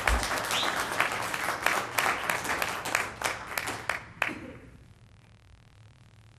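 Audience applause: many people clapping, which thins out and dies away after about four seconds, leaving quiet room tone.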